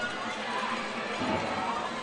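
Steady background noise of an indoor sports hall, with faint distant voices about a second in.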